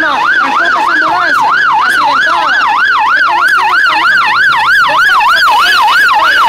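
Ambulance siren sounding a fast yelp, its pitch sweeping up and down about four times a second, loud and unbroken.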